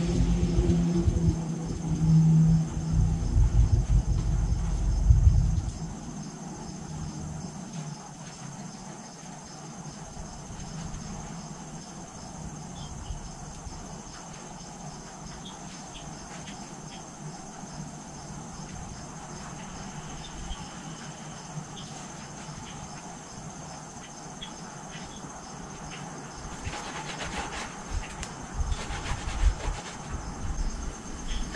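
Crickets chirping steadily over a faint hiss. A low engine-like rumble dies away about five seconds in, and near the end comes a brief rustle of a soapy sponge being rubbed on the tyre.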